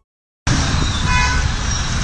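Steady rushing noise of heavy floodwater streaming across a flyover road, starting about half a second in. A brief vehicle horn toot sounds about a second in.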